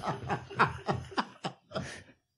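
Men laughing in quick, short pulses that die down near the end.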